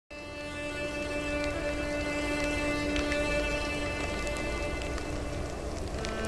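Cinematic logo-intro sound design: a held droning synth chord over a low rumble, starting abruptly, with scattered faint glittering ticks; the lowest tone fades out about two-thirds of the way through.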